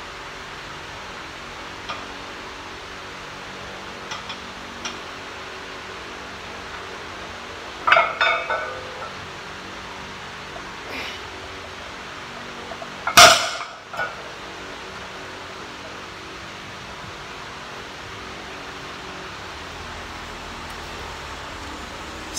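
A loaded barbell with iron plates, 425 lb, clangs down onto a concrete floor about thirteen seconds in, one loud metallic impact that rings briefly. Before it come a few faint clicks and a shorter burst of sound about eight seconds in, during the deadlift, over a steady background hiss.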